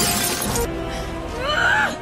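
Film soundtrack: an armoured cockpit's glass window shattering, over orchestral score. Near the end comes a short cry that slides up and down in pitch.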